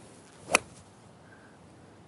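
A golf iron striking a ball on a full swing: one sharp click about half a second in. The strike sends the ball almost dead straight.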